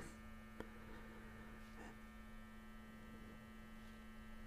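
Faint steady electrical hum: one low tone with a cluster of steady higher overtones, and a faint click about half a second in.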